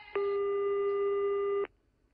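Telephone ringback tone heard down the line by the caller: one steady tone about a second and a half long that cuts off sharply, the ringing cadence of a Spanish phone line before the call is picked up.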